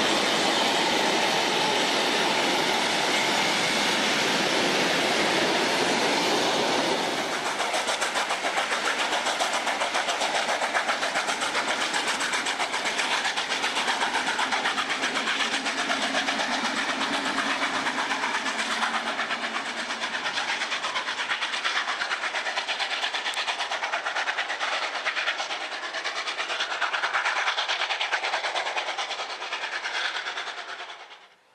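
A train running: dense, steady running noise for about the first seven seconds, then a somewhat quieter, rapid fine clatter of wheels on rail for the rest.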